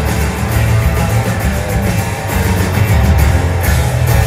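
Live rock band playing an instrumental passage: strummed acoustic guitars over electric bass and a drum kit, with no vocals, heard from the audience in a theatre.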